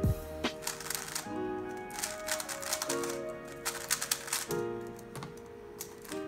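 Rapid clicking and clacking of a DaYan TengYun V2 3x3 speedcube being turned fast by hand, with background music throughout.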